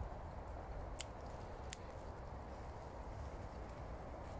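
Quiet woodland background with a low steady rumble and two small twig snaps underfoot, about a second and just under two seconds in.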